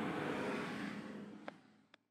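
Steady outdoor background noise, a low rumble with hiss, fading out, with two faint clicks near the end.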